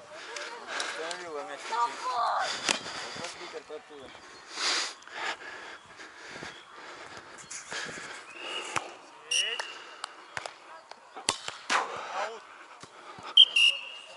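Players' voices across a sand volleyball court, a few sharp thumps of a volleyball being hit or caught, and two short, high, steady blasts of the referee's whistle, the second just before the next serve.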